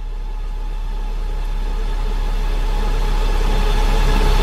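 A low, steady rumble that grows steadily louder.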